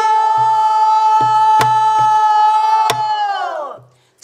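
Pansori singers holding one long sung note together, which bends down and dies away near the end, accompanied by a buk barrel drum: low hand strokes on the drumhead, with two sharp stick strikes on the drum's wooden rim.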